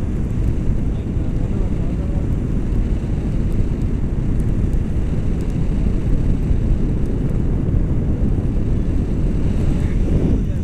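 Wind buffeting an action camera's microphone in flight under a tandem paraglider, a steady low rumble with no let-up.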